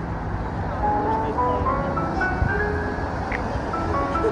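Background music: a simple melody of held, chime-like notes stepping up and down, over a low, steady rumble of city traffic.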